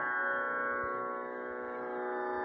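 Steady sruti drone sounding alone for Carnatic singing, a sustained unchanging tone with no voice over it.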